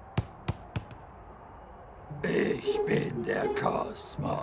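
A cartoon football bouncing on a hard floor: three quick bounces in the first second, coming closer together as it settles. From about halfway in, a character's wordless grunting vocal sounds.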